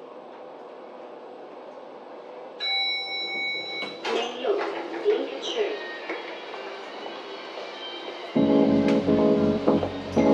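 Soft hiss, then a brief steady ringing tone about three seconds in, followed by indistinct voices. Music with guitar and bass comes in loudly about eight seconds in.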